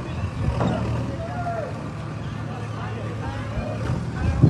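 Indistinct voices of people talking over a steady low motor hum.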